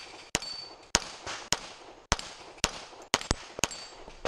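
Springfield Armory XDm 5.25 pistol firing .40 S&W major loads in a quick string, about eight shots. Most come roughly half a second apart, with a faster pair of shots near the end.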